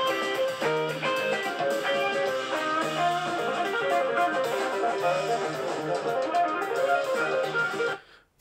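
A recorded album track with an electric guitar playing rapid legato runs over the backing. The music stops abruptly at the very end.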